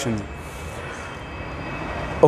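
Steady room noise, a low hum with an even hiss, in a pause between a man's spoken sentences; his voice trails off in the first moment.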